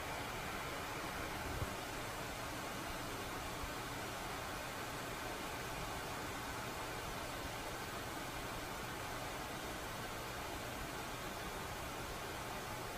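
Steady hiss of background noise with no voice or music, and a single soft low bump about one and a half seconds in.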